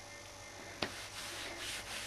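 Faint rubbing of hands over clothing fabric, a soft scratchy brushing that comes in several strokes, with a single sharp click a little under a second in.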